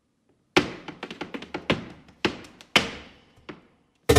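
Flamenco percussion on stage: after a moment of silence, a loud sharp strike and then an uneven run of quick, crisp strikes with a few heavier accents, each leaving a short ringing tail in the hall, growing sparser toward the end.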